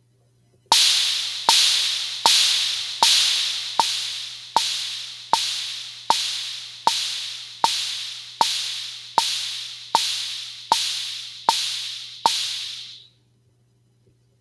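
Drum machine (drumbit.app, Kit 2) playing a bongo and an open hi-hat together on every beat at 78 bpm. Sixteen even quarter-note strikes, a little under one a second, mark a steady pulse. Each is a short bongo tap with a hissing hi-hat tail, and the playback stops about a second before the end.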